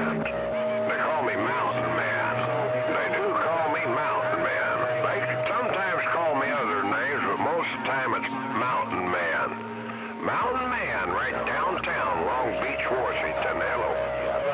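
CB radio on channel 28 receiving distant skip stations: several voices talking over one another, garbled and not readable, with steady whistle tones over them that come and go. The level drops briefly a little before ten seconds.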